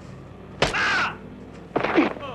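Two fight hits about a second apart. Each is a sharp smack followed straight away by a man's short cry, and the second cry falls in pitch.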